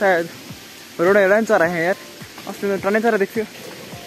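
A man's voice talking in short phrases over background music, with a steady hiss beneath.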